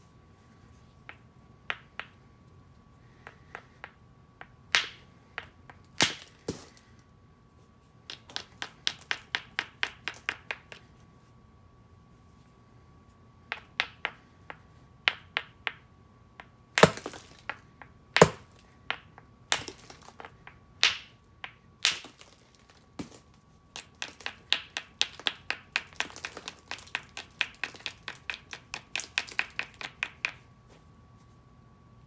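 A hammerstone striking Onondaga chert while spalling flakes off it: a few hard single blows with sharp cracks, between quick runs of lighter stone-on-stone taps.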